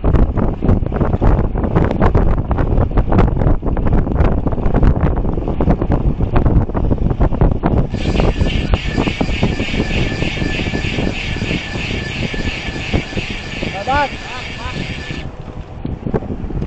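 Wind buffeting the microphone of a bike-mounted camera while riding on a road, with road traffic underneath. From about halfway a high, rapid ticking buzz runs for about seven seconds and then stops: a road bike's freewheel hub ratcheting as the rider stops pedalling and coasts.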